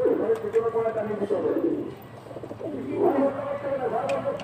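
Domestic pigeons cooing, several calls overlapping, with a short lull about two seconds in before the cooing picks up again.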